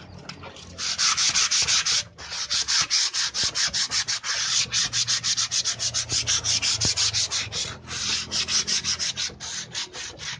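Hand-sanding a bare wooden door with sandpaper wrapped on a sponge pad, quick back-and-forth strokes smoothing the wood surface. The rubbing starts about a second in, pauses briefly near two seconds, then keeps going.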